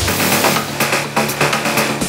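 Melodic techno / progressive house track from a DJ mix. The heavy kick drum and bass drop out right at the start, leaving crisp percussion ticking in a steady rhythm over sustained synth pads, as in a breakdown.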